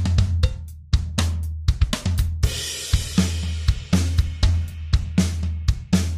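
Logic Pro X Drummer track on the SoCal kit playing a beat at 120 BPM: kick, snare and hi-hat hits, with a cymbal crash about two and a half seconds in. The drum pattern's MIDI notes run through a Transposer MIDI effect set to a user scale, which remaps which drum pieces the notes trigger.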